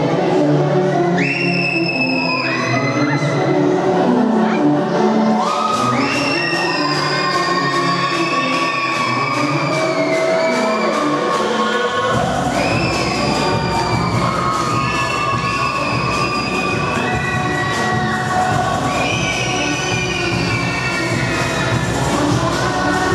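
Dance music played loud over a PA in a large hall, with a crowd cheering along. A regular beat sets in early and deep bass joins about halfway through.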